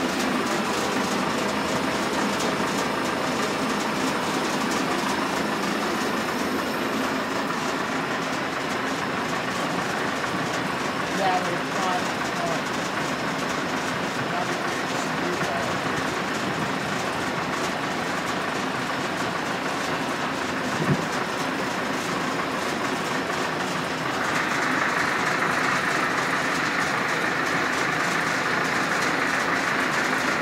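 Steady mechanical running noise with a couple of brief knocks; a higher hiss joins about four-fifths of the way through and holds.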